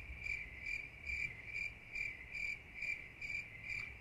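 Cricket chirping, a high-pitched trill that pulses about two and a half times a second. It starts just as the talk breaks off and stops just before the answer, the stock 'crickets' effect for a question met with silence.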